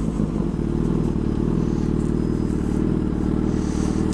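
Yamaha FZ6 inline-four engine idling steadily through an SP Engineering dual carbon exhaust.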